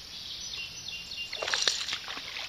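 Quiet creekside outdoor background with a few faint, high bird chirps, then a short burst of scuffling noise about one and a half seconds in.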